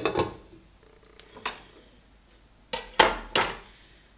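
A glass pot lid clinking as it is set onto a stainless steel cooking pot, followed by a few more light knocks and clatters of kitchenware, a cluster of them near the end.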